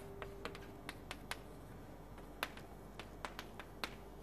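Chalk tapping and clicking against a blackboard while words are written, a dozen or so irregular faint sharp taps.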